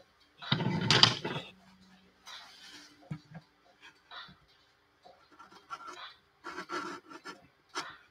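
Pastel pencil scratching on gesso-coated watercolour paper in short strokes with pauses between them. Near the start comes a louder rush of noise lasting about a second.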